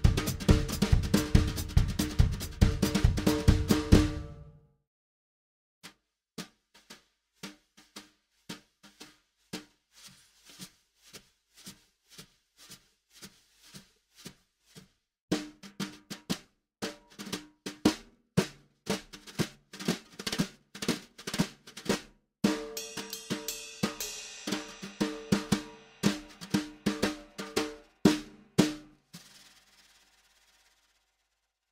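Drum kit played with wire brushes. A full groove with bass drum runs for the first four seconds or so, then quieter single strokes on the snare, then busier and louder playing from the middle on, growing brighter near the end, until it stops about a second before the end.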